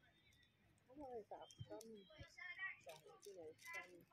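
Faint, distant voices talking, starting about a second in, with a single faint knock about two seconds in.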